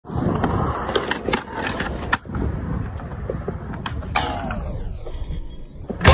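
Skateboard wheels rolling over concrete with a steady rumble, broken by several sharp clacks of the board. From about four seconds in the whole sound sinks in pitch, like tape slowing to a stop.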